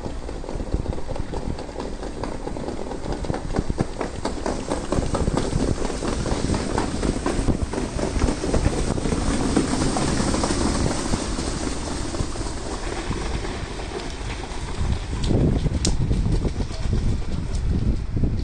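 Trotters pulling sulkies passing close on a sand track: a rapid rhythmic clatter of hoofbeats, thickest in the middle as the horses go by. Wind rumbles on the microphone.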